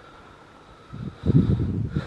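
Wind buffeting the microphone outdoors: irregular low rumbling that starts about a second in, after a quieter stretch of faint background.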